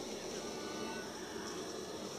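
Steady, faint rushing hiss of the propane gas burner heating a raku kiln during a firing.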